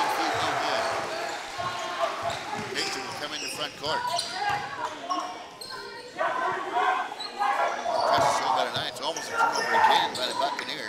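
Basketball bouncing repeatedly on a hardwood gym floor as players dribble, with voices in the echoing gym.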